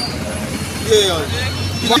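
A man talking over street traffic, with a steady low rumble of a vehicle engine running close by.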